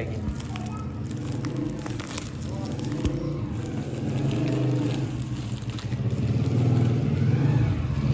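Small motorcycle engine running steadily, growing louder near the end as it approaches. Over it, plastic packaging crinkles and rustles as a parcel is handled.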